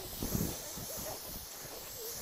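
Faint wind noise on the microphone: a soft steady hiss with irregular low rumbles.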